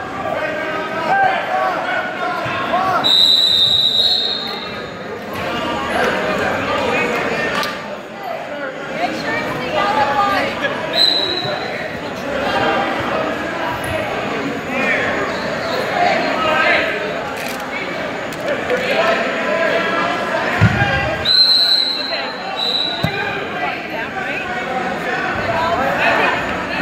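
Overlapping voices and chatter echoing in a large gym. Short, high referee whistle blasts sound about three seconds in, around eleven seconds and twice near twenty-two seconds, with a single low thud just before the last pair.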